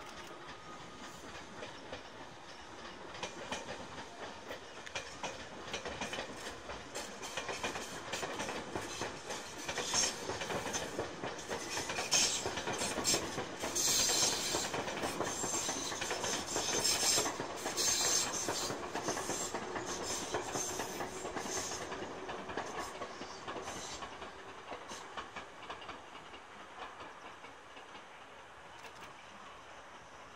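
Tobu 100 series Spacia electric limited express train departing and running past, its wheels clacking over the rail joints. The sound grows louder to a peak about halfway through, with a string of sharp clacks, then fades as the train draws away.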